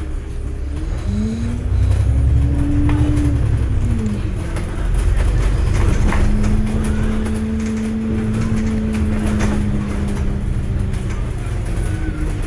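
Double-decker bus engine and transmission heard from the upper deck as the bus drives on: a deep rumble with a whine that rises, then drops away about four seconds in, followed by a steady hum, with a few short rattles.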